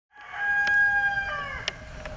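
A rooster crowing once: one long held call that bends down in pitch as it ends.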